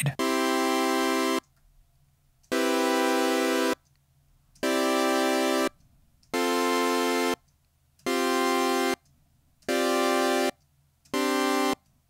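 Ableton Meld synthesizer's chord oscillator playing a four-voice sawtooth chord on a C3 note, seven times in a row. Each chord lasts about a second with a short gap before the next. The C root stays while the upper notes of the chord change each time as the Shape macro is turned up.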